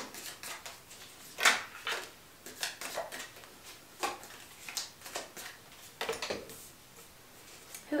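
Round tarot cards being drawn from a large deck and laid down on a wooden table: irregular soft slaps and rustles of card stock, the loudest about one and a half seconds in.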